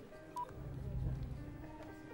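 A single short electronic beep about half a second in, over quiet background music with a low rumble just after it.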